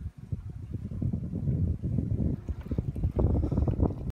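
Wind buffeting the microphone in rough, irregular gusts, louder from about a second in and strongest near the end.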